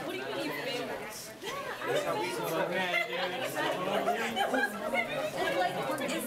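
Background chatter of many students talking at once, overlapping voices with no single speaker standing out.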